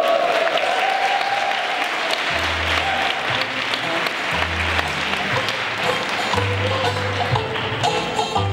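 Audience applauding, with music starting about two seconds in, its low bass notes coming in short, repeated stretches.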